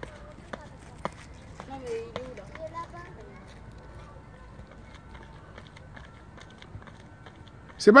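Quick, light footsteps of running shoes on a rubber running track as an athlete steps through a row of mini hurdles, clearest in the first three seconds, over faint outdoor background. A man's voice starts right at the end.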